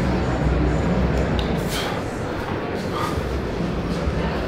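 Busy backstage room noise: a steady low rumble under indistinct murmuring voices, with a couple of short sharp clinks around the middle.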